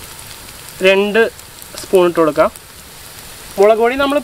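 A person speaking in short phrases, with a steady hiss underneath between the words.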